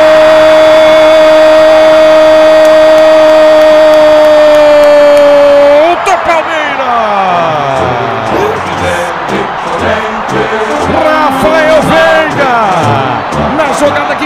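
A football commentator's long held 'gooool' shout on one steady high note, dipping slightly as it breaks off about six seconds in, followed by music with singing and a beat.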